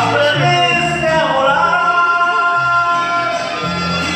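Man singing a Mexican ranchera-style song into a handheld microphone over instrumental accompaniment, holding long notes with vibrato.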